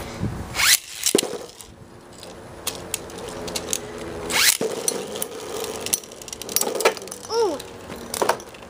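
Beyblade spinning tops launched into a plastic stadium. Two rising, zipper-like ripcord pulls come about half a second and four and a half seconds in, then the tops whir steadily in the bowl with scattered sharp clicks as they strike each other and the walls.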